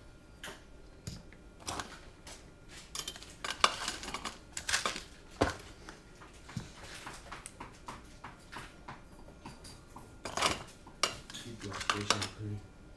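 Irregular clicks and clatter of small hard parts being handled: a carbon-fibre quadcopter frame and its metal standoffs and screws knocking together and against the work mat. The loudest clusters come a little before the middle and again near the end.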